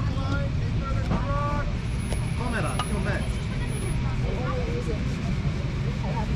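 Background chatter of several people talking near the parked kart, over a steady low rumble.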